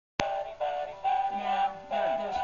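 Animated plush bunny toy playing a tinny electronic song with synthesized singing, starting abruptly just after the start and moving in held, stepped notes.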